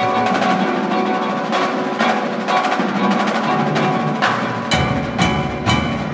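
Indoor percussion ensemble playing: marimbas and other mallet keyboards together with snare drums. About three-quarters of the way in, deeper drums come in and sharp accented strikes stand out.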